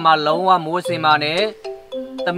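A man speaking Burmese over light background music. He pauses near the end, leaving a few held chime-like notes.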